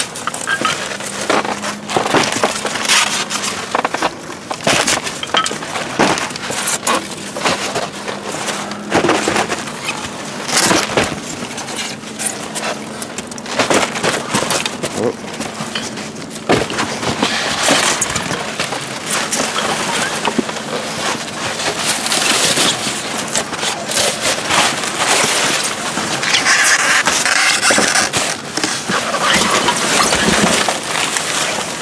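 Hands rummaging through dumpster trash: styrofoam, cardboard boxes and plastic bags being shifted, crinkled and crunched in a continuous run of rustles, crackles and knocks. A faint low hum runs under it for about the first half.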